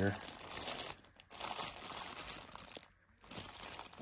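Clear zip-top plastic bag of loose plastic action figures crinkling as it is handled and squeezed. The rustle comes in three stretches, with short pauses about a second in and near three seconds.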